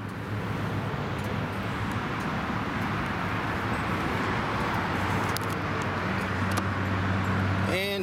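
Steady outdoor background noise: a low hum under an even hiss, like distant road traffic, with no clear engine rhythm.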